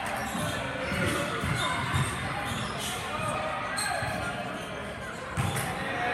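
Basketball being dribbled on a gym floor: repeated dull bounces in a large gymnasium, under the murmur of spectators talking.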